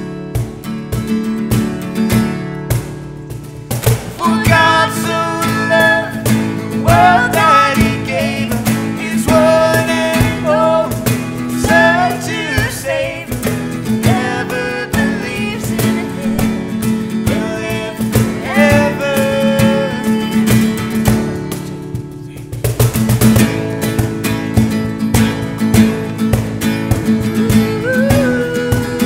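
Live acoustic worship music: strummed acoustic guitar and a cajon beat, with a woman singing the melody from about four seconds in. Her singing breaks off near the end for a short guitar-and-cajon stretch.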